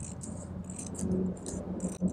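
Light, irregular rustling and crackling of thin paper strips being handled.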